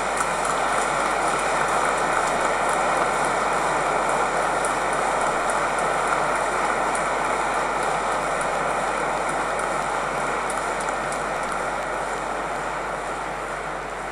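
Congregation applauding: a long, steady round of clapping that dies away over the last few seconds.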